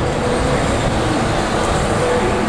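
Steady street traffic noise, with a car driving past close by.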